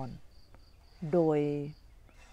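An insect chirping in a high, evenly pulsed trill behind a pause in a woman's speech.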